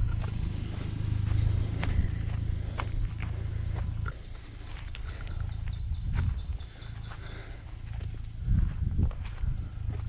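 Footsteps on a rocky dirt trail, a scatter of short knocks and scuffs. A low, even rumble under them stops abruptly about four seconds in.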